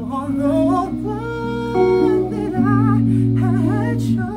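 A man singing long, held notes with vibrato, without clear words, over sustained guitar chords.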